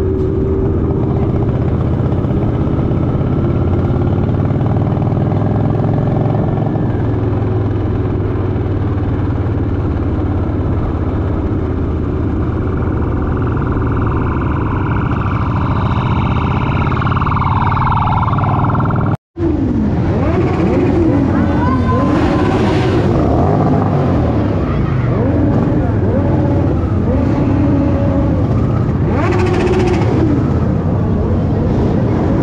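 Motorcycle engine running at road speed, with wind rushing over the microphone. After a sudden cut about two-thirds of the way in, many motorcycles ride slowly past, their engine notes rising and falling as they rev.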